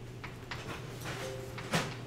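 A few computer mouse clicks as grid lines are picked, the loudest and sharpest near the end, over a steady low hum.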